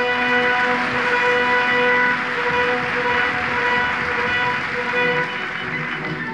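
Opera aria for baritone and orchestra from an old live recording: one long note held for about five seconds, easing off about five seconds in as the accompaniment carries on.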